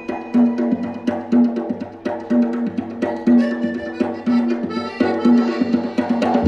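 Live Malay folk ensemble playing an inang dance tune. A hand drum keeps a steady beat with a pitched stroke about once a second, under sustained accordion tones.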